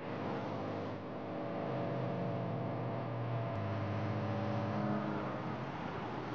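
Steady traffic noise from a busy multi-lane city road: the hum of many car engines and tyre noise blending into one continuous wash.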